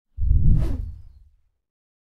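A single whoosh sound effect with a deep low boom, starting suddenly and fading out over about a second.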